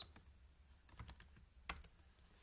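Scattered keystrokes on a computer keyboard: a few light clicks, with one sharper click near the end.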